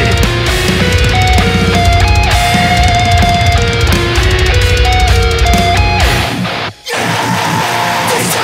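Instrumental passage of a heavy metalcore song: electric guitar playing a melodic line of held notes over a heavy band. About six seconds in, the low end drops out, with a short break just before seven seconds, and a lighter passage follows.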